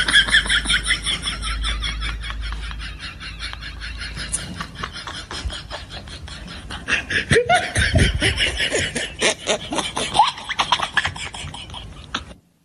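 Laughter in a fast, even run of ha-ha pulses, high-pitched at the start, easing off in the middle and rising again in the second half.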